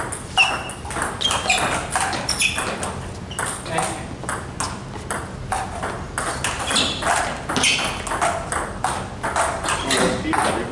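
NEXY table tennis balls clicking off paddles and tables in quick, irregular rallies.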